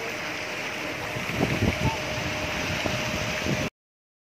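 Steady rush of churning, splashing shrimp-pond water, with a few low bumps about a second and a half in. The sound stops abruptly near the end.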